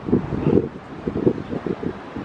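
Wind buffeting the microphone in uneven low gusts.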